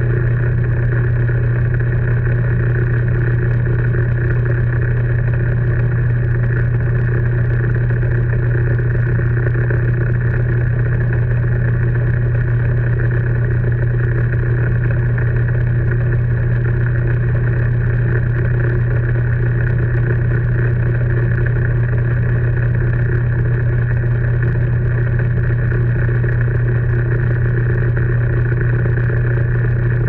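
Metal lathe running at a steady speed, its motor and drive giving a strong, even hum, while the aluminium part turning in the chuck is polished with a hand-held abrasive.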